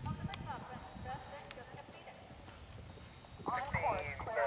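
Galloping horse's hoofbeats thudding on a dirt and grass course, quieter in the middle, as it approaches a log jump. People's voices come up louder near the end.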